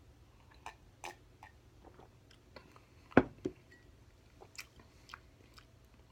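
A man sipping beer from a glass and swallowing, with small wet mouth clicks and lip smacks scattered through, and one sharper click about three seconds in.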